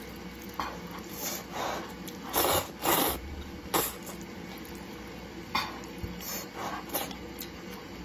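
Eating noodle soup from a clay pot: wooden chopsticks stirring and lifting wide noodles in the broth, with short wet slurping and chewing sounds. The bursts come irregularly, the loudest two close together about two and a half to three seconds in.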